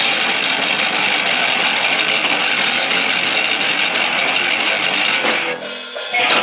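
A thrash/hardcore band playing live and loud, with electric guitars and drum kit and cymbals. The sound drops out briefly just before the end, then the band comes back in.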